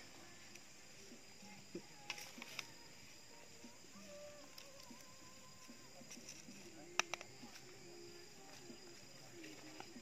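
Quiet stirring of crumbly fish-bait meal with a metal spoon in a plastic tub: soft scraping with a few light clicks, the sharpest about seven seconds in. Faint voices in the background.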